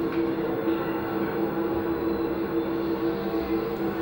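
A steady drone: two low held tones over a rumbling hiss, unchanging throughout.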